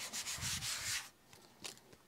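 Paper and cardstock rustling and rubbing for about a second as a layered paper tag and a paper cut-out figure are handled and slid on a cutting mat, then a single light tap.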